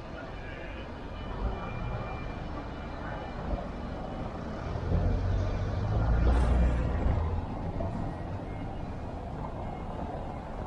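A car driving past close by on a cobbled street, its engine and tyre rumble swelling to a peak about six seconds in and then fading, over general street noise.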